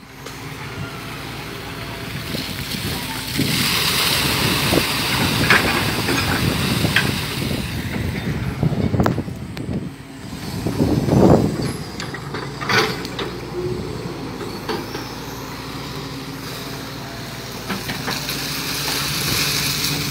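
Hitachi EX200 hydraulic excavator's diesel engine running steadily while the boom and bucket are worked, with a louder swell about halfway through and a few sharp knocks.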